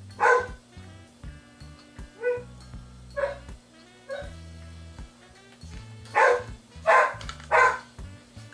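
A dog barking in six short, separate barks, three of them in quick succession near the end, over steady background music.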